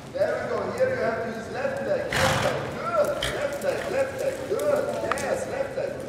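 A person talking over the soft hoofbeats of a horse cantering on sand arena footing, with a short burst of noise about two seconds in.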